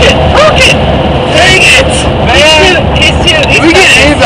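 Voices of people talking and calling out inside a moving van, over the steady drone of the van's road and engine noise at highway speed.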